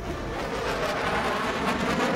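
Steady rushing noise of a jet aircraft in flight, growing a little louder over the two seconds.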